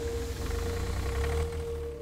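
Trailer score sound design: one steady held tone over a low rumble.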